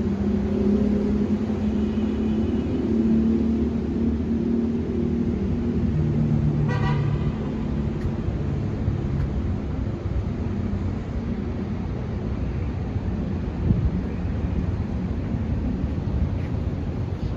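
City street traffic: vehicle engines running steadily, with a short car horn toot about seven seconds in.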